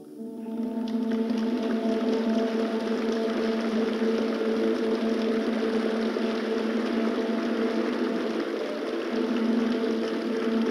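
Concert audience applauding as a tabla solo ends, rising over the first second and then holding steady. Under the applause a drone holds on one pitch.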